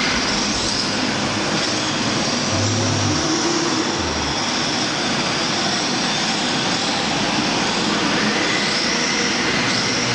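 Radio-controlled rear-wheel-drive drift cars sliding in tandem: a steady hiss of hard tyres skating over the smooth track, with high electric-motor whines that rise and fall as the throttle is worked.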